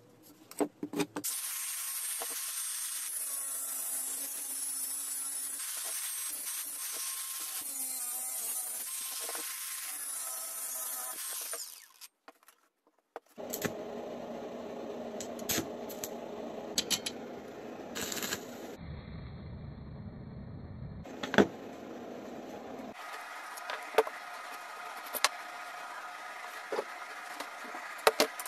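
A power tool runs steadily for about ten seconds, working metal. After a short pause come scattered clicks and knocks of metal parts and tools being handled.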